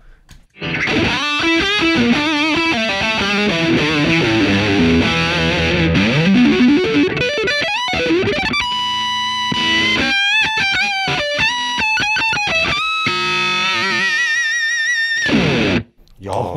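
Ibanez JS1BKP electric guitar with its Sustainiac sustainer on, played distorted through a Fender Twin Reverb amp and a Red Rox pedal. Fast lead runs for about eight seconds, then long held notes with wide vibrato that keep ringing without dying away.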